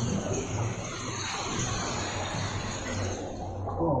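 Sea water sloshing and splashing around a swimmer, heard as a steady rushing noise.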